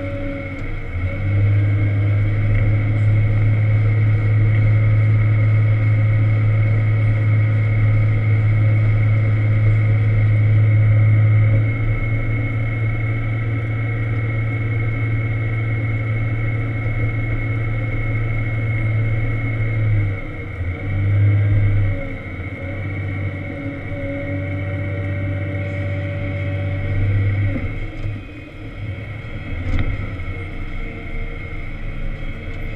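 Volvo L70 wheel loader's diesel engine heard from inside the cab, running under load with a deep steady drone while pushing snow. The drone is loudest for the first ten seconds or so and eases back about twenty seconds in, with brief swells after. A steady high whine runs over it.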